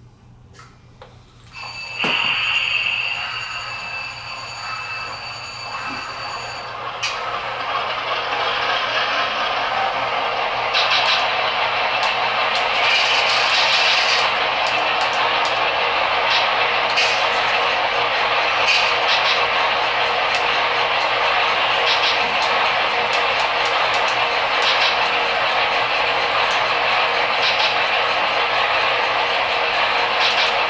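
DCC sound decoders in HO-scale model locomotives playing locomotive sounds through their small onboard speakers. A high whistle-like tone starts suddenly about two seconds in and stops about seven seconds in. A steady hiss with light clicks follows, growing louder over the next few seconds and then holding.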